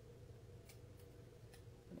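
Small craft scissors snipping a cardstock strip: two faint, short clicks a moment apart near the middle, over near silence.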